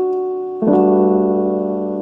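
Piano playing a G/A D F# chord (G in the left hand, A, D and F sharp in the right). A chord struck just before is fading away, then the full chord is struck about half a second in and left to ring, slowly dying away.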